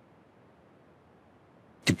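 Near silence: a faint, steady hiss of room tone. Speech starts just before the end.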